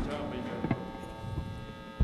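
Steady electrical hum from the band's stage amplifiers during a pause in the playing, with a faint click about two-thirds of a second in.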